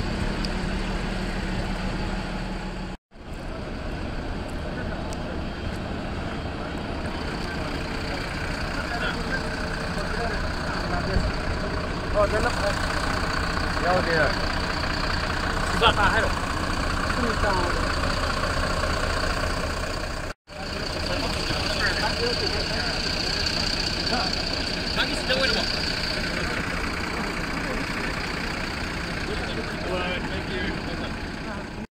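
Coach engines idling with a steady hum under the chatter of many people talking close by. The sound cuts out abruptly twice, a few seconds in and about two-thirds of the way through.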